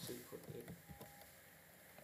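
Faint computer keyboard keystrokes, a few quick clicks in the first second as text is typed and deleted, then near-silent room tone.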